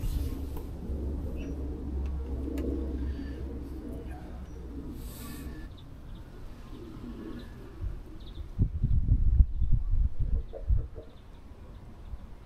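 A pigeon cooing, a few low repeated phrases, over a steady wind rumble on the microphone. About nine seconds in comes a run of heavy low bumps and thumps.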